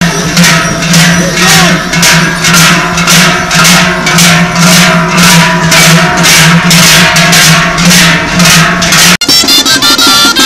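Joaldunak's large cowbells (joareak) clanging together in a steady marching rhythm, about three clangs a second, over a steady low ring from the bells. About nine seconds in, the sound cuts abruptly to lively band music with drum.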